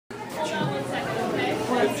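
Indistinct chatter of several voices in a large room, with no clear words.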